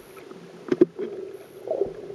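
Underwater sound through a camera housing: a steady hum with swirling water noise, broken about three quarters of a second in by two sharp clicks in quick succession.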